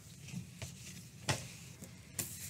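Faint handling sounds of a piece of crochet being turned over: soft yarn rustles and a few light ticks, with one sharper click about a second and a third in.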